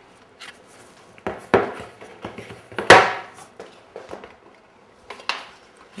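Wooden stiles for a wainscot frame knocking and clattering against each other as they are picked up and handled, a few sharp wooden knocks with the loudest about halfway through.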